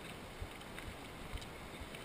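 Mountain bike, an Orange Five, descending a gravel trail at speed: wind rushing over the camera microphone and tyres rolling on loose gravel, with short low knocks from the bike hitting bumps, the loudest about a second and a half in.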